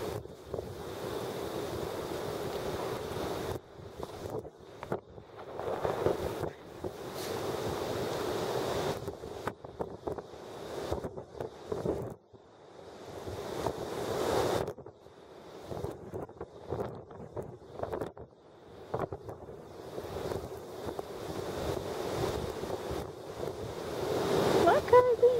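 Strong, gusty wind buffeting the camera microphone, rising and falling in irregular gusts with brief sudden lulls.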